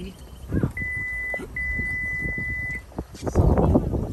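A steady high electronic beep, held for under a second and then again for about a second, over the low rumble of a vehicle. A louder rush of noise comes near the end.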